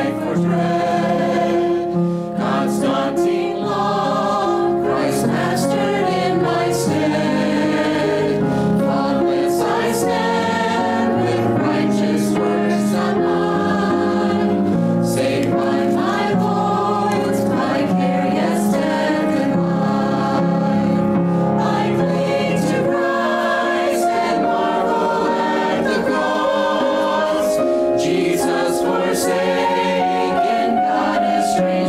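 Church choir singing, many voices holding long notes at a steady, full level.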